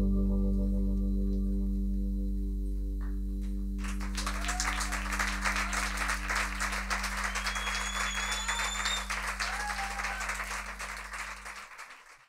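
A live band's final chord on guitars and keyboards rings on and slowly dies away. About four seconds in, audience applause breaks out, with cheers and a whistle, before everything fades out.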